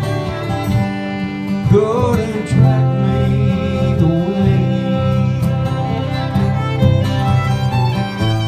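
An 1800s violin plays the melody live over two acoustic guitars in an instrumental passage of a country-style ballad.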